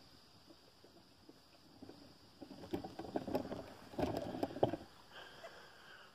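A faint, steady high-pitched insect drone, with about two and a half seconds of irregular rustling and clicking from a phone being handled and turned around, starting about two seconds in.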